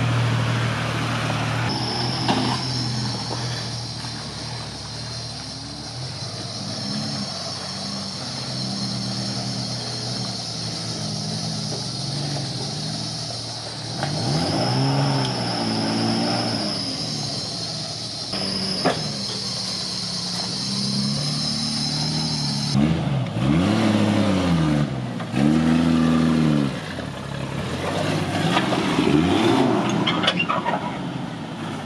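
Off-road 4x4 engines revving up and down in short bursts as the trucks crawl over rock ledges, the revs loudest and most frequent in the last third.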